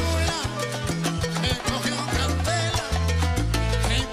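Live son-style Latin music on acoustic guitar and bongos over a stepping bass line, with a steady, dense percussive beat and a wavering sung or lead melody.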